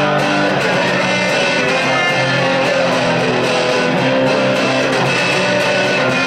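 Guitar strummed in a steady run of chords, without singing.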